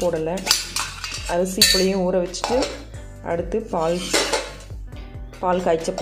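Stainless steel lunch box being opened and handled: its clip lid is unlatched and lifted, giving several metallic clinks and clatters. Background music with a singing voice plays throughout.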